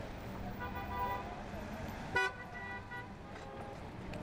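Street traffic with vehicle horns tooting. A horn note sounds about half a second in, and a short, loud toot just after two seconds in is the loudest sound.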